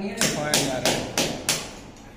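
Hammer striking a chisel into a concrete ceiling, about five sharp blows at roughly three a second, chipping out a hole for electrical wiring.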